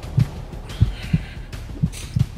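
Heartbeat sound effect: low double thumps, lub-dub, repeating about once a second.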